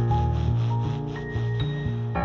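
Tenor saxophone playing a series of low notes that change several times a second, in free-jazz style.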